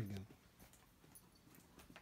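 A voice saying the end of a word, then near silence in a small room, broken by a few faint, sharp ticks.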